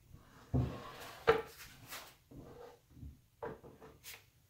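Handling noises from gloved hands working around a poured panel in a plastic paint tray: a dull thump about half a second in and a sharp knock just after, then softer short taps and rubs as paint drips are wiped from the panel's edge.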